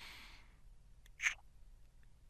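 A man's soft breathy sigh close to the microphone, then a short, louder breath sound a little past a second in.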